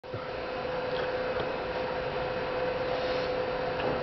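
Steady room hum and hiss carrying a single constant tone, with a couple of faint ticks about a second in.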